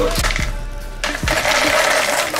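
Dry Chex cereal poured from its box into a mixing bowl, a rushing rattle of pieces that starts about a second in, over background music.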